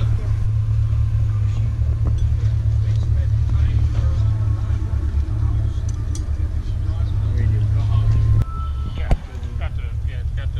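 A loud, steady low rumble with no clear engine note, dropping off suddenly near the end, followed by a single sharp click. Faint voices of people are heard behind it.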